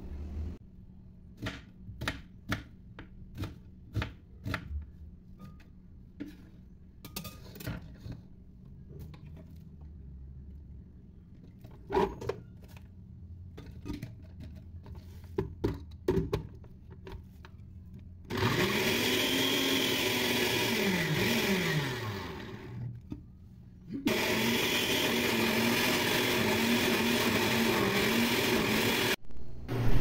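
Scattered clicks and knocks of kitchen handling, then an electric blender running twice, for about four and five seconds, as garlic and onion are blended. In the first run the motor's pitch rises and falls; in the second it holds steadier.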